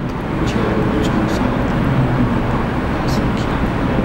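A steady low rumbling noise that builds slightly louder, with a few faint light scratches over it, likely a marker on the whiteboard.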